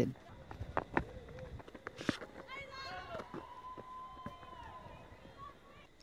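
Faint on-field ambience at a cricket ground: players' voices calling out, a couple of sharp knocks in the first two seconds, and a drawn-out high call from about three seconds in.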